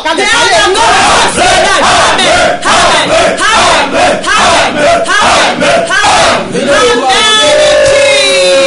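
Loud, fervent shouted prayer in a strained voice, continuous and without pause. Near the end a steady held musical note comes in.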